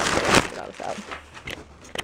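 Crumpled packing paper inside a new backpack rustling and crinkling as a hand rummages through it. It is loudest in the first half second, then fades to fainter rustles with a couple of small clicks near the end.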